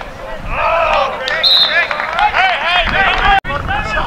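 Several voices shouting and calling out during a lacrosse game, with a few sharp knocks among them. The sound cuts out for an instant near the end.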